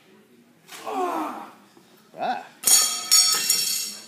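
Wordless vocal reactions from a person: a falling groan-like sound about a second in, then a loud, high-pitched squeal held for about a second near the end.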